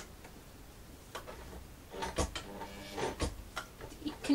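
Domestic sewing machine being stitched slowly by its hand wheel: scattered mechanical clicks and ticks from the needle mechanism and presser foot, busier in the second half, with two soft knocks.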